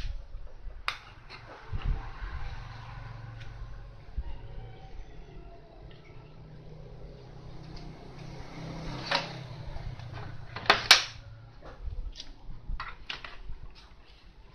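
Scattered clicks and knocks of handling on a workbench, the sharpest a quick pair a little before the end. Under them runs a low, steady hum that fades out about three-quarters of the way through.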